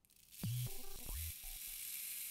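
Electronic soundtrack: a steady high hiss of noise swells in within the first half second and holds, with a few short, low electronic blips underneath near the start.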